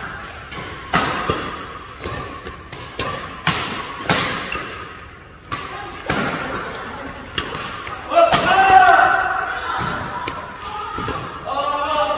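Badminton rally: sharp racket-on-shuttlecock hits and thuds of players' footwork in quick, irregular succession, echoing in a large hall. A player's voice calls out loudly about eight seconds in.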